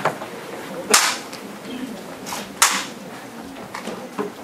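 Sharp, dry claps of a jukbi, the Korean Buddhist split-bamboo clapper, struck against the palm as a signal during the ritual: a light clap at the start, two loud ones about a second and nearly three seconds in, and a faint one near the end.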